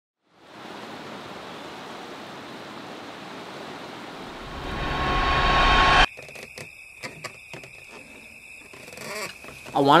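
A steady rushing noise that builds in loudness and cuts off abruptly about six seconds in, followed by faint scattered clicks.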